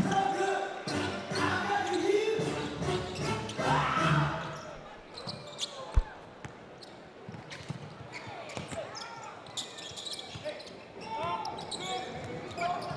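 Basketball arena sound: crowd voices are loud for the first four seconds or so, then it drops to quieter court sounds with scattered ball bounces and a sharp thump about six seconds in.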